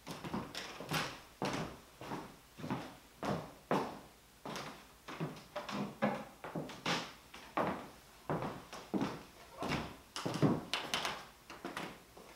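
An irregular run of light knocks and scuffs, roughly two a second: footsteps and wooden didgeridoos being handled and set down.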